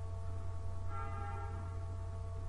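Steady low electrical hum with faint steady tones above it. About a second in, a faint ringing of several higher tones comes in and fades away.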